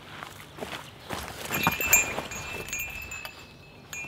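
A few rustling clicks, then hanging metal garden bells clinking, the loudest strike about two seconds in, and ringing on with several high, steady tones.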